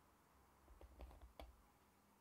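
Near silence: room tone, broken by a few faint, short clicks about a second in.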